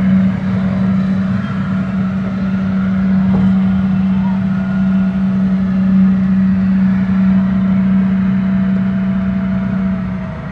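A Spider amusement ride's drive machinery running with a steady low hum, which drops away near the end.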